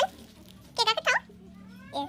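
A young child's short, high-pitched squeals: one at the very start, then two quick ones about a second in, over a faint steady hum.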